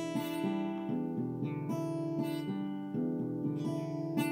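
Acoustic guitar playing the outro of a song, picked notes and chord tones changing every fraction of a second and ringing over one another.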